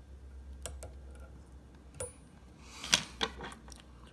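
A few light clicks and taps of a metal whip finisher against the hook and vise as a thread whip finish is tied, the sharpest about three seconds in, over a steady low hum.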